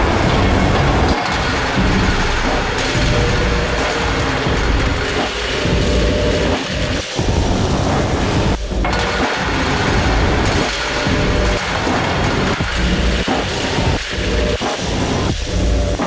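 Improvised industrial noise music from an Erica Synths Perkons HD-01 and a Soma Pulsar-23 analogue drum machine: a dense, distorted wash with heavy booming low end, chopped by irregular brief drop-outs. A faint held tone comes in about six seconds in.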